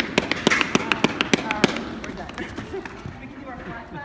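Hands clapping close by: a quick, irregular run of sharp claps that stops about a second and a half in.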